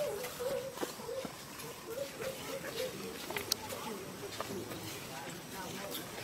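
Infant macaque whimpering: a thin, wavering, high call that wobbles around one pitch and fades out near the end, with a few soft clicks of movement on dry leaves.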